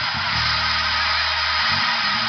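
Electric bass guitar holding one long low note for about a second, with a steady hiss of other music above it.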